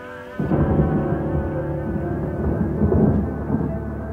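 A sudden loud, low rumble, like thunder, enters about half a second in within a tech house mix, over sustained low tones of the track.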